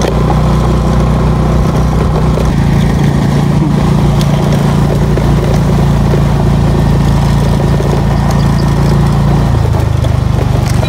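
Motorcycle engine running steadily, heard from the rider's seat on a gravel road. The engine note shifts about two and a half seconds in and turns to a slower, pulsing beat near the end as the bike slows.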